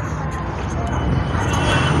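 Low, steady rumble of street traffic, growing slightly louder near the end.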